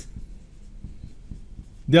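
Marker pen writing on a whiteboard: faint, short, irregular strokes and taps, over a low steady hum.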